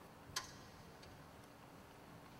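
Near silence of a quiet room, broken about a third of a second in by one sharp click, with a few much fainter ticks.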